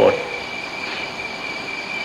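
Steady hiss of an old tape recording with a thin, constant high-pitched whine running through it. A man's voice finishes a word at the very start.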